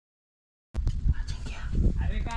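Dead silence, then about three-quarters of a second in, a person whispering close to the microphone over a heavy low rumble. The sound cuts in abruptly.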